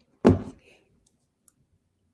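A sudden loud knock about a quarter of a second in, dying away within a third of a second, then two faint clicks.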